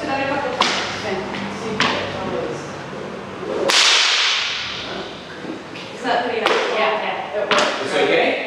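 A whip lashing in a room: several sharp cracks, the loudest about halfway through with a ringing tail, as the lash strikes and wraps around a forearm.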